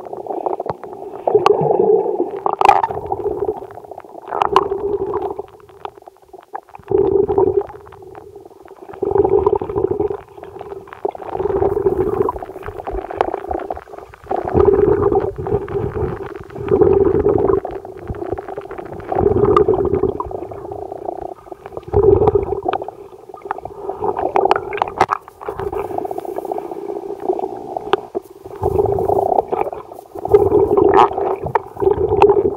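Muffled underwater sound picked up by a submerged camera in lake water: a resonant rumble with some gurgling that swells every two to three seconds.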